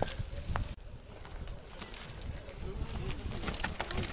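Low, steady rumble of wind on the microphone, with a few faint clicks and knocks as a mountain bike is picked slowly over rock.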